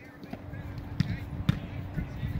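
Soccer balls being struck on an artificial-turf field: two sharp thuds about half a second apart near the middle, with a few fainter knocks, over a low outdoor rumble.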